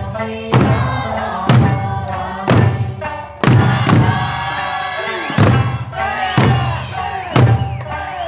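Eisa drum dance: large barrel drums (ōdaiko) and hand-held frame drums (paranku/shime-daiko) struck together in unison about once a second. Between the strokes runs the sung folk-song accompaniment.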